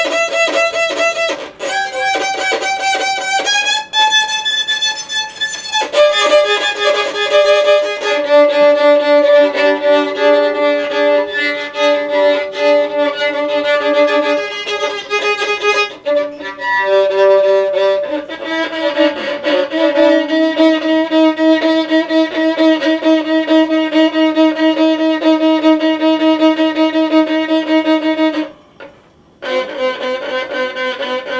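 Three-quarter-size violin bowed in long held notes. Single notes step upward over the first few seconds, then two strings sound together in long double stops. It breaks off briefly near the end and starts again.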